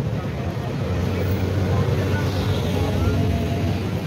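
Street traffic with the low, steady hum of engines, swelling in the middle, and market voices in the background.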